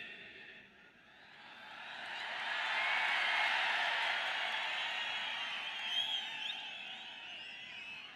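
Large crowd cheering, swelling over about two seconds and then slowly dying down, with a few whistles and shouts through it.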